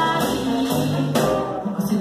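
Live acoustic jazz-chanson band playing: upright double bass, acoustic guitar and drums with brushed cymbal strokes in a steady swing, under a woman's voice singing.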